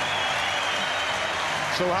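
Large stadium crowd applauding, a steady wash of clapping and noise, with a commentator's voice coming in near the end.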